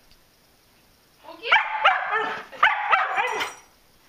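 A dog barking: a quick run of several high-pitched barks starting about a second in and lasting about two seconds.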